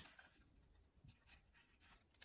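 Near silence, with faint rubbing and a soft tick about a second in as plywood pieces and a quick-grip bar clamp are handled.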